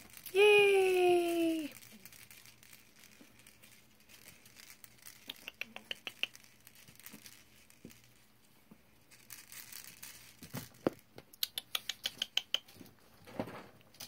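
A person's voice in one drawn-out call that falls in pitch, then faint, scattered ticks, patter and crinkling from Pomeranian puppies moving about a playpen, with a couple of soft knocks near the end.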